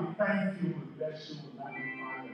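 A person's voice giving two short, high-pitched, wavering vocal sounds in the first half second, with weaker ones after, over background music with held tones.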